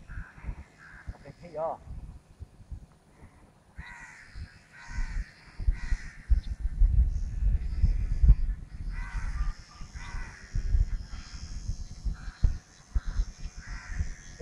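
Wind buffeting the microphone in gusts, strongest through the middle, while a bird caws in two runs of about three harsh calls.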